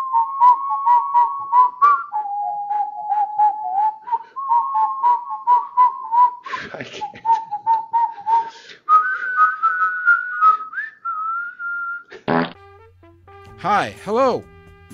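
A man whistling a tune, stepping between a few notes and moving higher in the second half, over an even clicking beat of about four clicks a second. Near the end the whistling stops after a short burst of noise, and music begins.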